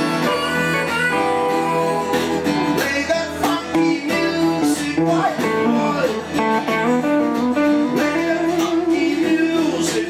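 An electric guitar and an acoustic guitar playing an instrumental blues passage together, with notes bent up and down in pitch now and then.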